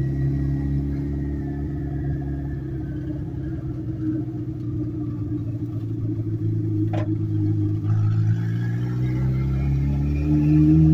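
Turbocharged Subaru EJ flat-four engine running while the car is driven, heard from inside the stripped-out cabin. The engine note sinks over the first few seconds, a single sharp click comes about seven seconds in, and the revs climb again near the end.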